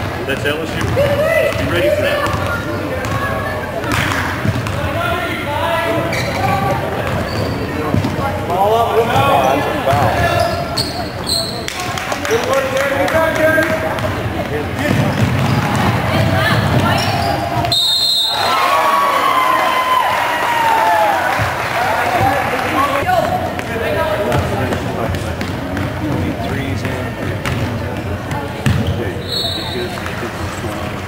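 A basketball being dribbled and bounced on a hardwood gym floor during a game, amid the voices of players and spectators in the hall.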